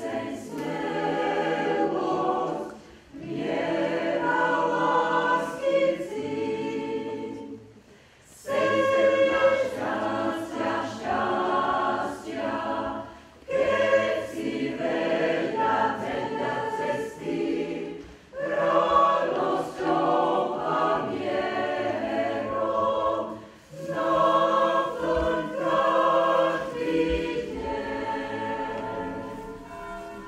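Mixed choir of men's and women's voices singing, in phrases a few seconds long with brief breaks between them.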